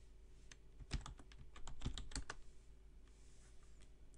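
Computer keyboard being typed on: a quick run of keystroke clicks about half a second to two seconds in, then it stops, over a faint low hum.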